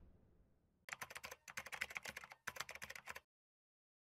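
Faint computer-keyboard typing: rapid key clicks in three short runs that stop a little over three seconds in.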